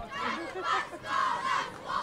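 A group of children shouting together in unison, a chant in short repeated bursts.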